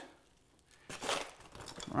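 Crushed ice being spooned onto a mounded drink with a metal bar scoop: a faint, short crunching rustle about a second in.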